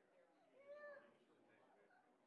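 Near silence: faint, distant chatter of people talking in a large room, with one short voice sound that rises and falls about halfway through.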